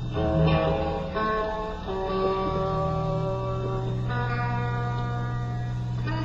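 Electric guitar played live through an amplifier, ringing out slow held notes and chords that change every second or two over a steady low drone.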